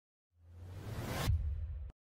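Designed whoosh sound effect for a logo reveal: a rush of noise over a low rumble swells for about a second, the hiss falls away, then the rumble cuts off suddenly.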